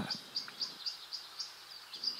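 Faint background chirping: a short, high chirp repeated evenly, about four times a second.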